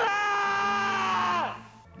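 A man's long, held yell of "Stella!", its pitch dropping as it breaks off about a second and a half in.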